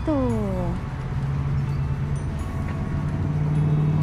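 A steady low mechanical hum that grows louder in the last second or so, after a woman's drawn-out falling voice at the very start.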